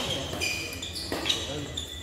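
Badminton racket striking the shuttlecock with a sharp crack about a second in, during a doubles rally, with short high squeaks from shoes on the court floor.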